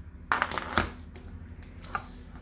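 A coiled aircraft radio wiring harness handled by hand: a short burst of rustling and clicking from the wires and plastic connectors about half a second in, then one light click near the end.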